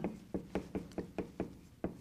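Dry-erase marker tapping and knocking against a whiteboard while words are written, a quick uneven series of short taps, about four or five a second.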